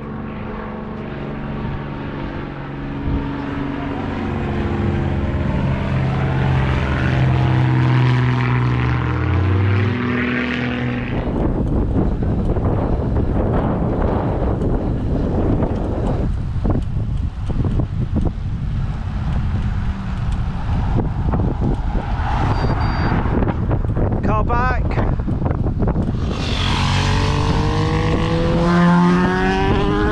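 A propeller aeroplane flying overhead, its engine drone growing louder and shifting slowly in pitch over the first ten seconds or so. About eleven seconds in this cuts to the rush of wind and tyre noise from riding a road bike in a group along a country road, with a rising engine-like whine near the end.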